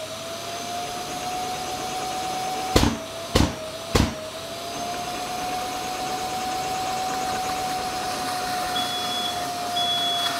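Bosch GAS 55 M AFC wet vacuum running with a steady whine while sucking water up its hose out of a bucket, with three sharp thuds about half a second apart a few seconds in. Near the end it gives short high bleeps, its warning that it is sucking a heavy load.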